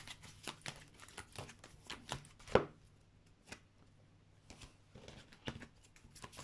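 Tarot cards being shuffled and handled: irregular light snaps and taps, with one sharper snap about two and a half seconds in and a quieter stretch after it.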